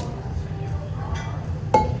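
A metal cocktail shaker tin set down on the bar with one sharp clink and a short ring near the end, with lighter clinks of glassware and ice.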